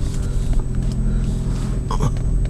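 Car engine running with a steady low rumble, heard from inside the cabin as the car edges out slowly.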